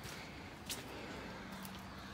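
Faint outdoor background noise with a couple of soft clicks and a faint low hum.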